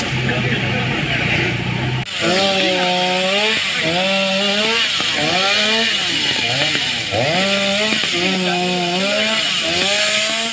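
Two-stroke chainsaw cutting through a fallen tree, starting about two seconds in. Its pitch holds steady, then repeatedly dips and climbs back as it revs and is loaded in the wood. Before it starts there is a steady hiss with a low hum.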